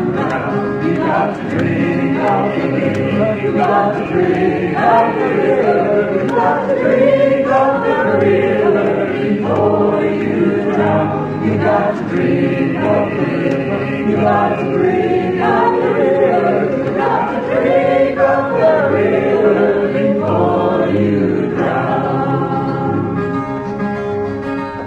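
Live recording of a filk song: voices singing together over acoustic accompaniment. About two seconds before the end the singing stops and the accompaniment plays on alone.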